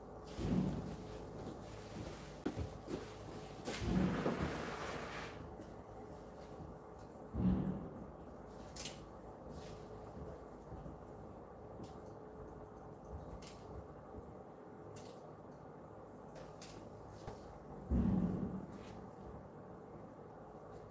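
Scissors cutting hair: faint, sharp snips spaced irregularly, with a few louder dull knocks and rustles, the biggest about four seconds in and near the end, over a faint steady hum.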